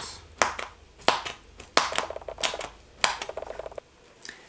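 Plastic wrap stretched over a seed container being poked through with a thin stick: about five sharp pops, one roughly every two-thirds of a second.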